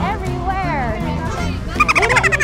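A turkey gobbling, a rapid warbling call near the end, over steady background music.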